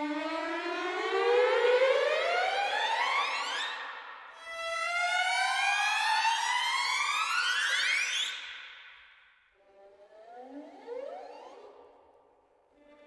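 A sampled chamber section of second violins playing upward glissando effects: slow rising slides in pitch. Two long slides of about four seconds each are followed by a shorter, quieter one near the end.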